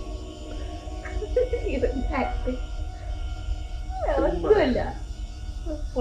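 Horror-comedy film soundtrack playing: eerie background music of sustained, held tones, with voices heard briefly twice, the second a longer wavering one about four seconds in.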